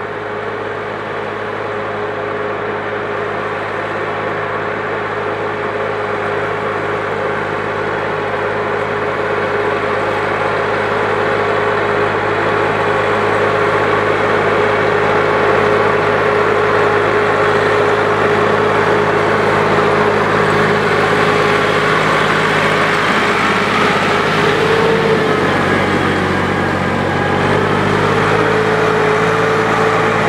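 Farm tractor's diesel engine running steadily under load as it drags a tined cultivator through a waterlogged paddy field, growing gradually louder as it approaches. Its note shifts slightly near the end.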